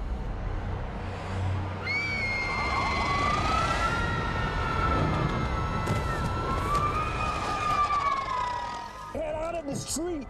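A siren wails in long, slow rises and falls over a dense rumbling noise bed, with a few sharp cracks in the middle. A voice comes in near the end.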